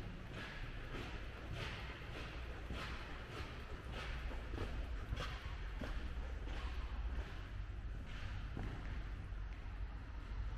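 Footsteps of a person walking at a steady pace on a hard stone floor, about two steps a second, over a low rumble of handling noise.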